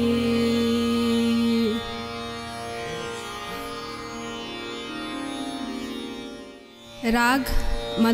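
A woman singing Hindustani khayal holds a long steady note over a tanpura drone, and the note ends about two seconds in. The drone carries on more quietly with harmonium. Near the end the voice returns with a quick ornamented wavering run, and tabla strokes come in.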